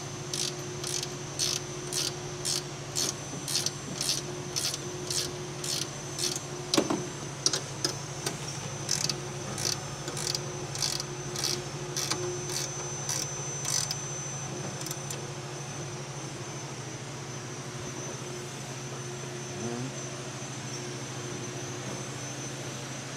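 Ratcheting wrench clicking in short, even strokes, about two a second, as nylon lock nuts are snugged down on a three-point lever linkage. The ratcheting stops about 14 seconds in, with one louder knock about 7 seconds in, over a steady low fan hum.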